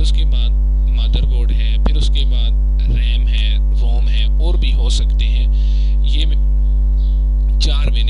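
Loud, steady electrical mains hum with a ladder of evenly spaced overtones, carried on the recording, with a faint voice speaking underneath.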